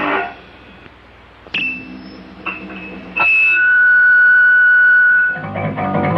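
A punk rock song cuts off, and after a short gap an electric guitar plays a few picked notes, then holds one high note for about two seconds. The full band with bass and drums comes in near the end.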